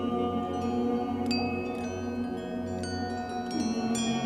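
Glass goblets and glass pyramids of a water-sound instrument ringing with clear, bell-like pings, about six at irregular intervals, over sustained low tones, all hanging on in the very long reverberation of an underground water cistern.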